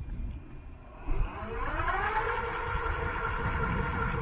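Electric fat-tire bike's 48V 500W rear hub motor whining under power. About a second in it rises in pitch as the bike speeds up, then holds a steady pitch. Wind rumbles on the microphone throughout, loudest in a brief gust as the whine begins.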